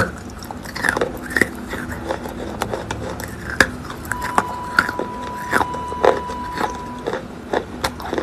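Wet chalk being bitten and chewed right at the microphone: an irregular string of sharp, crumbly crunches.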